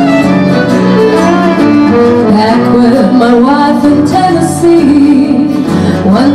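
Fiddle playing a melodic instrumental break over strummed acoustic guitars, performed live by an acoustic country-folk band.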